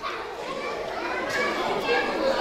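Many children's voices calling out and chattering together in a large hall, with no single voice standing out.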